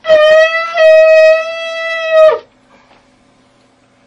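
Shofar (ram's horn) blown in one long, loud, steady-pitched blast of about two and a half seconds, with a brief break under a second in and a louder swell just before it stops, sounded to call the congregation up for anointing.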